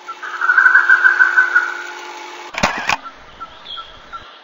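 Nature ambience sound effect: insects chirping in an even rhythm over a steady hiss, loudest in the first second and a half. About two and a half seconds in there is a sharp double click of a camera shutter.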